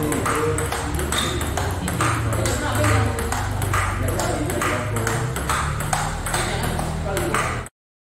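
Table tennis rally: a celluloid ball clicking off the paddles and table in a steady back-and-forth, about two to three clicks a second. The sound cuts off suddenly near the end.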